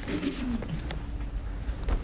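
Tail end of audience applause: a few scattered claps as it dies away, with a brief low murmuring voice in the first second.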